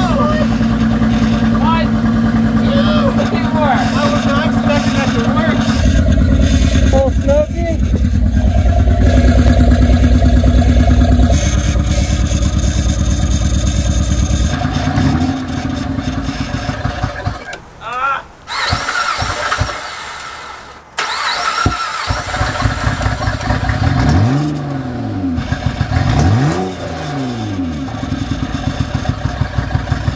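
The 2006 Honda Pilot's J35 V6 being cranked over by the starter in long stretches, with short pauses between attempts, turning over without catching. Typical of a no-start for which a failing fuel pump is suspected.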